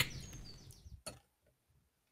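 Near silence between stretches of talk: a voice trails off at the start, then one faint click about a second in, then dead silence.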